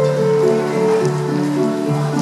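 Acoustic harp played by hand: a steady flow of plucked notes, each ringing on and overlapping the next.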